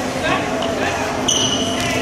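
A referee's whistle blown once, a short steady blast of about half a second midway through, over the chatter of a crowd in a gym hall. In volleyball this whistle signals the server to serve.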